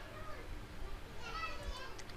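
Faint children's voices in the background over a low steady hum, with a short stretch of talk or calling in the second half.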